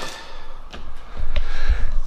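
Low rumble of a handheld camera being moved around, loudest in the second half, with two faint light clicks before it.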